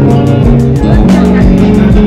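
Acoustic guitar played through a small portable amplifier, sustained notes ringing on, with a voice over it.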